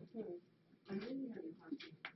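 Quiet, indistinct speech: a low voice murmuring in two short stretches with no clear words.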